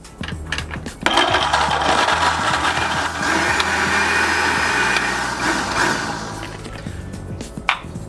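Countertop blender switched on about a second in, blending ice with frozen orange juice concentrate and milk; it runs steadily for about five seconds, then dies away near the end. Background music plays underneath.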